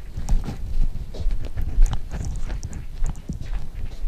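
Footsteps of hard-heeled boots on stone paving: irregular sharp clicks over a low rumble on the microphone.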